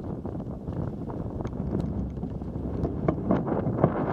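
Wind buffeting the camera's microphone, a rough rumbling noise with scattered small clicks and knocks, growing louder near the end.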